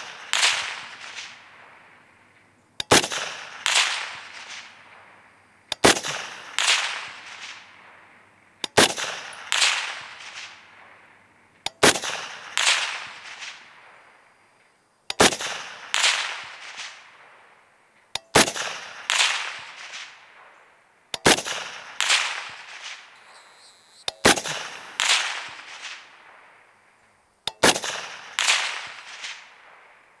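Suppressed DRD Paratus semi-automatic rifle in .308 Winchester fired in a steady string, nine shots about three seconds apart. Each report is followed by a second sharp crack under a second later and a reverberating tail.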